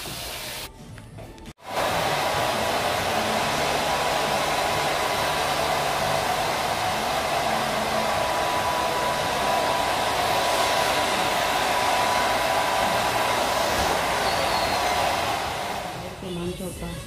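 Handheld hair dryer blowing steadily on long hair, a rush of air with a thin steady whine in it. It starts about a second and a half in and runs on until just before the end.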